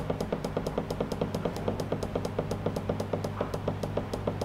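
Digital controller of a semi-automatic liquid filling machine ticking rapidly and evenly, about eight short ticks a second, as its down-arrow key is held to step a setting value, over a steady low electrical hum.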